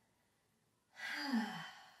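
A woman's audible sigh of relaxation starting about a second in: a breathy exhale with a falling voiced tone, trailing off.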